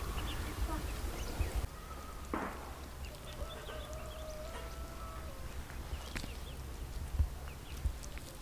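Quiet outdoor ambience with a low wind rumble on the microphone and a few soft rustles. About two seconds in, a faint distant animal call is held for about three seconds, dipping slightly at the end.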